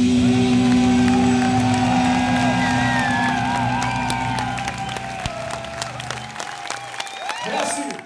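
A metal band's final held note rings on and fades out while the concert crowd cheers and applauds, the clapping growing denser after a few seconds.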